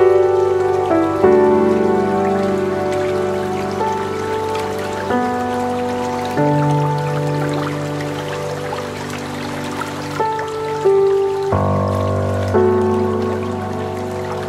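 Lo-fi instrumental music: soft sustained chords that change every few seconds, over a steady hiss.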